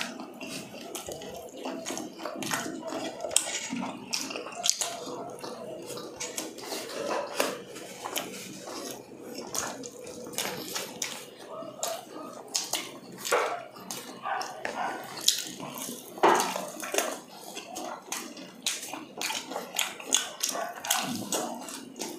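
Close-up eating sounds of two people eating fried chicken: irregular wet chewing, smacking and small clicks, many per second.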